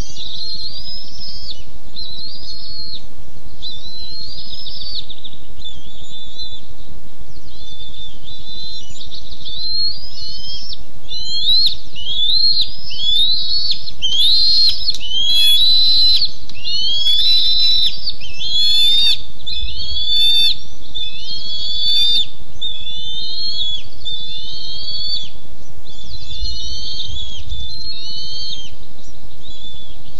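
Bald eaglets giving a long series of high, rising chittering calls, about one a second, growing denser and louder in the middle and thinning out toward the end: alarm calls at an intruding adult eagle on the nest.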